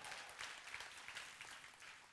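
A congregation applauding in response to a call for praise, faint and dying away.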